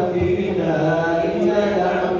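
A man's voice chanting a religious recitation into a microphone, melodic with long held notes.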